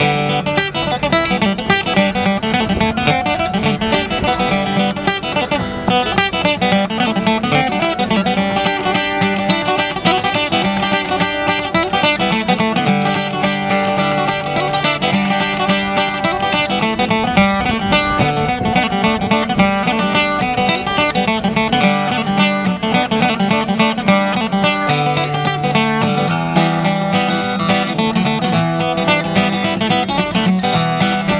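Steel-string acoustic guitar playing a continuous tune, a busy run of notes over a steady bass.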